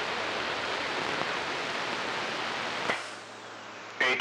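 CB radio receiver hissing with band static between transmissions. About three seconds in there is a click and the static drops to a quieter hiss with a faint low hum, as a strong incoming signal keys up and pulls the receiver's noise down.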